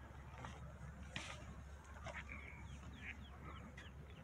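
Faint bird calls: scattered short chirps and quick falling notes, over a low steady background rumble.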